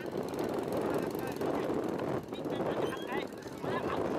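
Crowd of many people talking over one another, the voices blurred into a hubbub with no clear words, over a steady dense rumbling noise.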